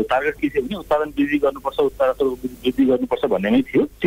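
Speech only: a person talking in Nepali, with a narrow, telephone-like sound.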